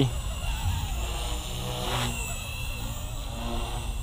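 Small electric RC helicopter (Blade 230S V2) in flight in idle-up one, its motor and rotor blades giving a steady whirring hum at raised head speed.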